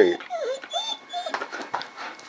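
German Shepherd puppy whining: several short, high-pitched whimpers in quick succession, begging for a treat held out of reach.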